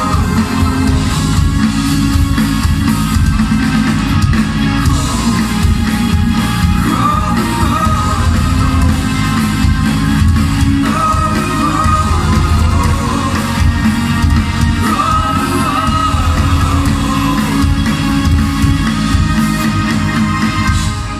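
Rock band playing live: drums, bass and electric guitars with a lead singer, heard from the audience in a large hall.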